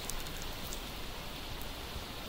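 Steady low hiss of microphone and room noise with a faint low hum, and no distinct events.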